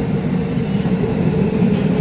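Seoul Metro Line 2 subway train pulling into the station: a steady low rumble of the cars running past, with a steady hum over it.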